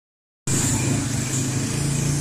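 Street traffic noise dominated by a nearby motor scooter engine running steadily at a constant pitch, starting abruptly about half a second in.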